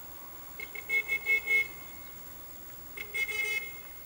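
A car horn tooting: a quick run of about four short beeps about a second in, then a longer beep near the end.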